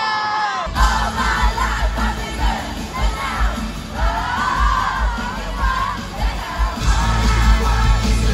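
Live pop-rock concert heard from inside the audience: a loud crowd shouting and singing over the band's heavy kick-drum and bass beats. The band's beats come in abruptly under a second in.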